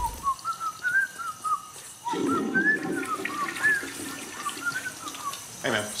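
A man whistling a tune in short, quick notes, with a faucet running water into a sink over washing hands from about two seconds in.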